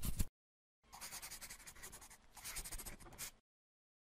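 Pen or marker scribbling on paper as a sound effect: a run of quick scratchy strokes lasting about two and a half seconds, starting about a second in. A louder scratching burst cuts off just after the start.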